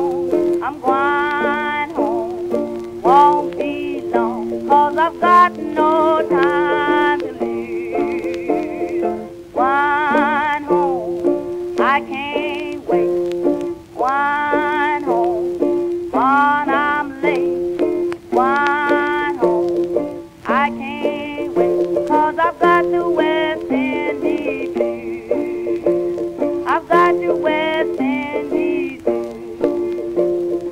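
A 1924 Columbia 78 rpm record playing a blues: a woman sings phrases with a wide vibrato, accompanied by guitar and ukulele.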